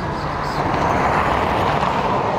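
Road traffic noise: a steady rush of passing vehicles that grows louder about half a second in.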